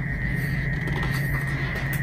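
A picture-book page is turned, with soft paper handling over a steady low hum and a faint steady high tone.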